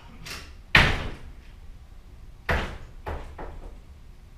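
A series of sharp knocks or bangs: a faint one just after the start, the loudest about three-quarters of a second in, another strong one about two and a half seconds in, then two lighter ones close together, each dying away quickly.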